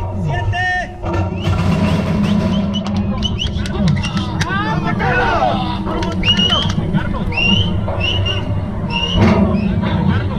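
A horse-race starting gate opens about a second in, with a sudden burst of noise as the horses break out. Men then shout and whoop several times over background music.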